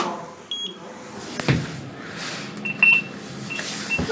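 Short electronic beeps from the push buttons of a Kone lift car's panel as they are pressed: one higher beep about half a second in, then a run of three or four lower beeps near the end. A single knock falls between them.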